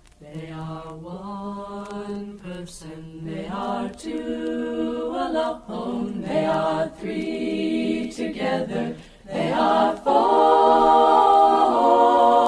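Choir singing a cappella: held notes in phrases with short breaks, growing louder about ten seconds in.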